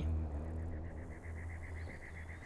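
Crickets chirping: a rapid, even pulsing on one high note starting about half a second in, over a low steady rumble.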